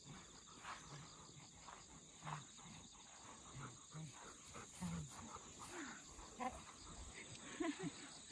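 Crickets chirping steadily in the grass, under soft, irregular low huffs about twice a second from a panting golden retriever. A few short pitched sounds come in near the end.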